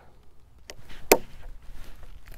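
Rotary leather hole punch pliers snapping through leather: two sharp clicks less than half a second apart, the second louder.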